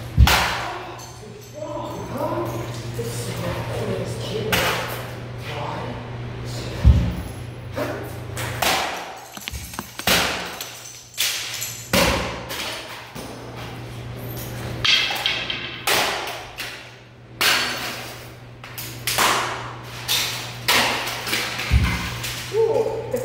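Hammer blows smashing a computer keyboard on a wooden stump: over a dozen hard thuds at irregular intervals, the first one the loudest, coming in a quick flurry near the end.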